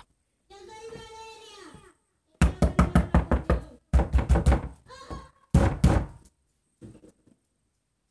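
Rapid knocking on something hard in three quick runs of several knocks each, about six or seven a second, the loudest sounds here.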